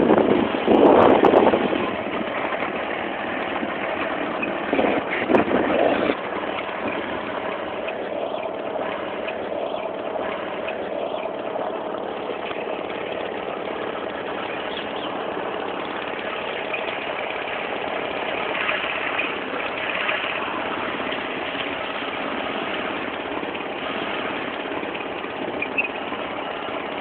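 A vehicle engine running steadily: a continuous hum with one steady tone through it. Louder, short noisy bursts break in during the first two seconds and again about five seconds in.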